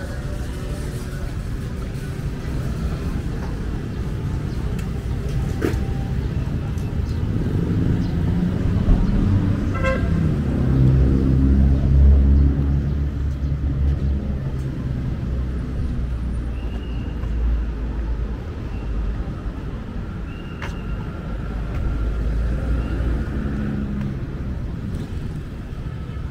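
City street traffic: a motor vehicle's engine passing close, loudest about halfway through, with a short horn toot about ten seconds in over steady road noise.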